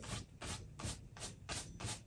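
Two-inch bristle brush rubbing across a canvas wet with oil paint in a quick series of short, faint strokes.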